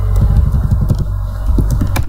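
A steady, loud low rumble with a few sharp clicks over it, about a second in and near the end.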